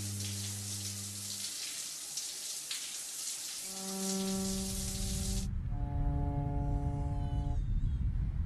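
Shower spray running, a steady hiss that cuts off suddenly about five and a half seconds in. Held notes of background music sound under it and carry on after it stops.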